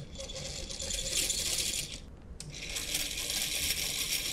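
Homebuilt series DC motor running with a light load of two screws, its brushes rattling on the commutator as a steady high, hissy chatter. The sound breaks off for about half a second near the middle, then resumes.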